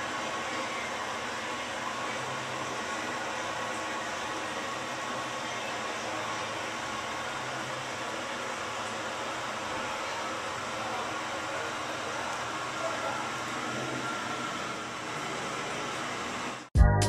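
Steady rushing background noise with a faint hum, unchanging throughout, with no distinct events.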